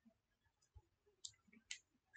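Near silence with three faint, short clicks spaced about half a second apart.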